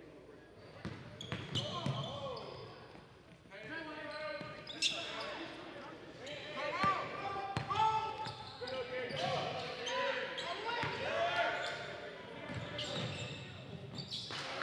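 Live basketball game sound in a large gym: a ball bouncing on the hardwood court with sharp knocks, amid voices and shouts echoing through the hall. It starts quiet and grows busy about a second in.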